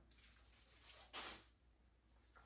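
Near silence: room tone, with one brief soft burst of noise a little after a second in.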